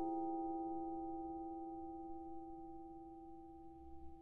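Vibraphone chord ringing out after it was struck, its several tones fading slowly and evenly with no new notes played.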